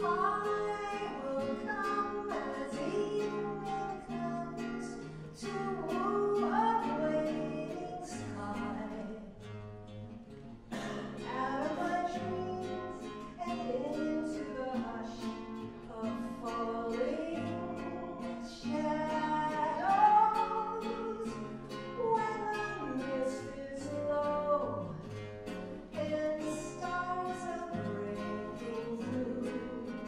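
A woman singing a song while accompanying herself on a plucked acoustic guitar.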